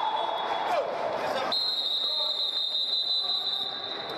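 Indistinct voices echoing in a large indoor sports hall, over a steady high-pitched whine. The sound changes abruptly about a second and a half in.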